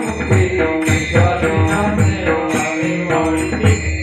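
Devotional aarti music: chant-like singing over a steady drum beat, with bright jingling percussion on the beat.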